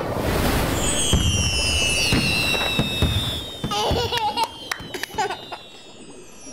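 Cartoon sound effects: a rushing whoosh, then several high whistling tones that slowly fall in pitch, dotted with sharp sparkly clicks. A baby giggles briefly about four seconds in and again near the end.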